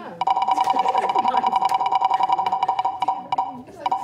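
Game-show prize-wheel spin sound effect: rapid ticking clicks over a steady two-note electronic tone, stopping about three and a half seconds in, with a short return near the end.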